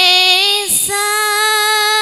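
A woman singing a syi'ir, a Javanese Islamic sung poem, solo and unaccompanied, in long, steady held notes. The voice breaks briefly about three-quarters of a second in.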